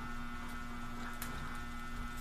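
A steady electrical hum with a faint click a little over a second in.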